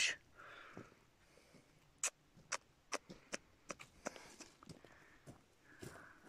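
Faint snaps and crackles of dry twigs and leaf litter on a stony forest floor: from about two seconds in, a string of short sharp clicks roughly half a second apart.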